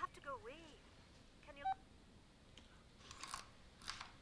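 Faint, muffled voice of a caller heard through a telephone handset's earpiece, with a wavering pitch. Two short rustles follow near the end.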